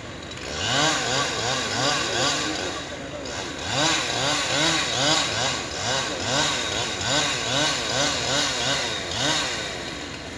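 Chainsaw cutting into the base of a pine trunk, its engine pitch rising and falling two or three times a second; it starts about half a second in and dies away near the end.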